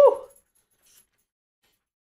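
A man's brief high-pitched yelp that falls in pitch, his reaction to a squirt of XClear nasal spray that hits hard.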